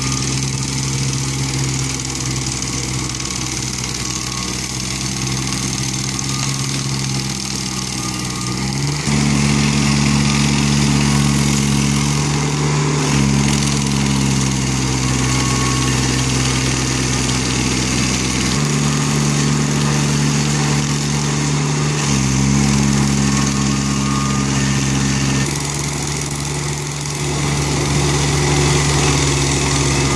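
Red Roo SP5014 ETRX 33 hp tracked stump grinder running hard, its cutter wheel grinding into a liquidambar stump. The engine note steps up and down in pitch every few seconds as the cutting load changes.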